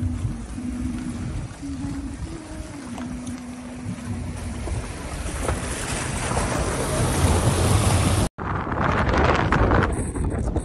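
Toyota Yaris driving through a shallow rocky stream: water splashing and rushing under the tyres over the low rumble of the car. It grows louder over several seconds and cuts off suddenly near the end, followed by wind and road noise on the dirt track.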